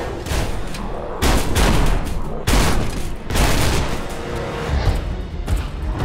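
A film action soundtrack: tense music under loud, rapid crackling and heavy booming hits that surge several times.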